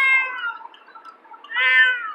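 A domestic cat in a carrier meowing twice. Each long meow falls in pitch, one at the start and one near the end: the complaint of a cat that hates car rides.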